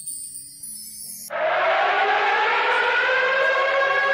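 Synthesized siren-like FX sample from a drill drum kit. A loud sustained tone with a noisy edge, its pitch rising slowly, cuts in about a second in over the tail of a shorter high-pitched effect. A quiet low bass line runs underneath.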